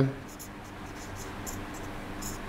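Marker pen writing on a whiteboard: a series of short, faint, high-pitched strokes.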